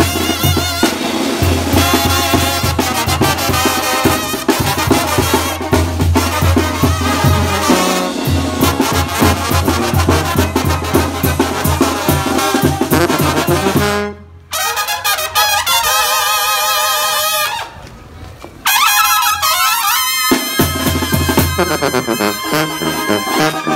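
Mexican brass banda playing a son: tuba bass line, trombones and trumpets over snare and bass drum with cymbal. About 14 seconds in the band stops suddenly, the higher horns carry a wavering melody alone without the tuba, and the full band with drums comes back in near the end.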